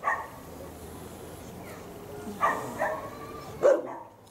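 Dog barking, a few short barks, the loudest near the end.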